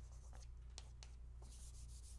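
Chalk writing on a blackboard, faint: a few light taps and short scratches.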